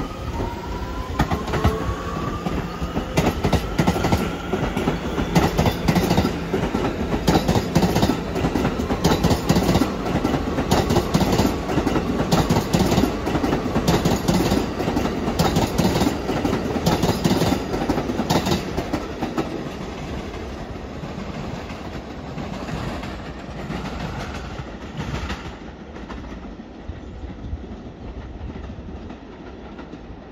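R211A subway train pulling away, its motor whine rising in pitch at the start. Its wheels then clatter over the rail joints, loudest midway, and the sound fades steadily over the last ten seconds as the train draws off.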